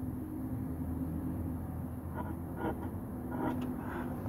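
A steady low mechanical hum, with a few faint brief sounds about two seconds and three and a half seconds in.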